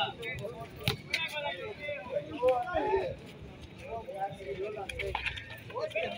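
Men's voices talking and calling out, with a single sharp smack about a second in.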